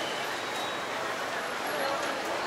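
Steady ambience of a busy indoor market hall: a constant wash of background noise with indistinct voices of people talking.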